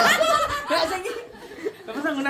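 A group of women laughing together, the laughter dying down after about a second.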